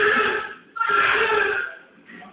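Newborn baby crying: two cries about a second each, with a short pause between.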